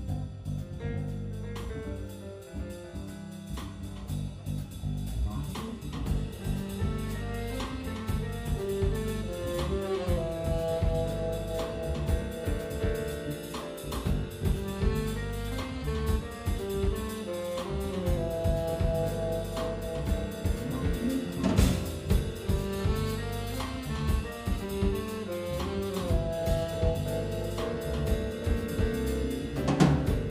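Live jazz band playing an instrumental passage on drum kit, electric bass, keyboard and saxophone, a short held melodic phrase coming back about every eight seconds. A sharp accent hit stands out about two-thirds of the way through.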